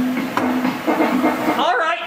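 A man's voice making short low hums, then a drawn-out wavering cry near the end, with a single sharp click of the air hockey puck about half a second in.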